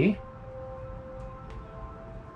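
Soft background music of held, steady tones, with two faint light clicks near the middle.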